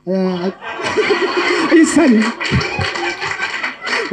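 Audience laughter and crowd noise swelling about a second in, with men's voices laughing and talking over it through a hall's speakers.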